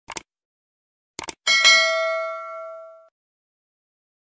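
Subscribe-button animation sound effect: a short click at the start and a quick cluster of clicks about a second in, then a bell ding that rings and fades away over about a second and a half.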